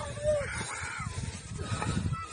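Distant human shouting: a short pitched cry near the start, then a fainter drawn-out call, over a steady low rumble on the microphone.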